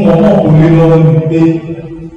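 A man's voice through a handheld microphone, drawing out one long held chanted note, with a short change of pitch about one and a half seconds in before it fades.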